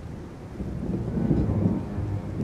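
A low rumble of thunder swells in about half a second in and rolls on, over a steady wash of stormy rain ambience.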